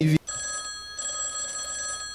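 Mobile phone ringing: a steady, high electronic ring of several held tones that starts just after a brief sound cuts off.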